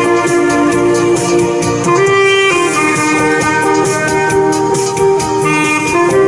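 Saxophone playing a melody in long held notes over a backing of keyboard and a steady beat.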